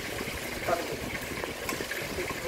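Hand-held can opener being cranked around the rim of a metal can, its cutting wheel clicking and grinding in short repeated strokes over a steady background hum.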